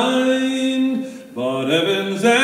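Unaccompanied male voice singing a folk ballad: a long held note that fades out about a second in, then the next line begins.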